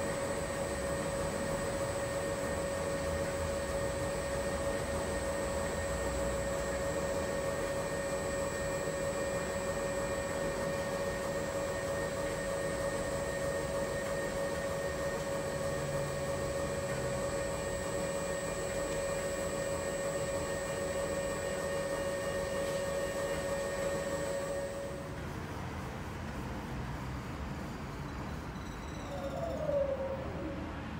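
Commercial front-load washing machine running as its drum tumbles laundry: a steady motor whine over the hum of the turning drum. The whine cuts off about five seconds before the end, leaving a lower hum, and a short falling tone sounds at the very end.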